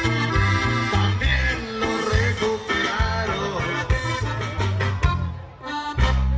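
Mexican regional band music playing a corrido for dancing, with a steady bass beat. The music drops briefly in level about five and a half seconds in.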